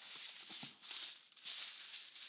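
A sheet of aluminium foil crinkling and rustling in several short surges as it is spread and smoothed flat over a tray by hand.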